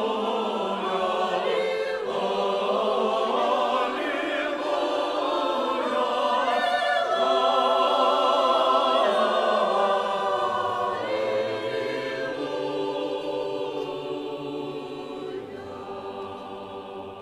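Mixed church choir of men's and women's voices singing sustained chords with vibrato, swelling to its loudest about halfway through and then dying away toward the end.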